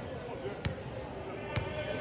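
A basketball being dribbled on a hardwood gym floor: a few separate bounces, the clearest about two-thirds of a second in and about a second and a half in.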